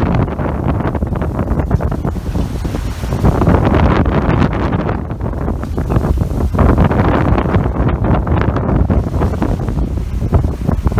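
Strong wind buffeting the microphone over the rush and splash of a sailing yacht's bow wave breaking along the hull in rough sea.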